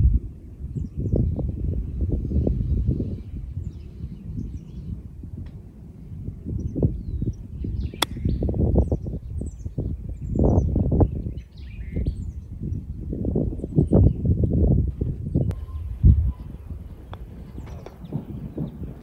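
Wind gusting across the microphone, with faint birdsong chirping. About 8 seconds in comes a single sharp click: a 58-degree wedge striking a golf ball on a chip shot from a tight, downhill fairway lie.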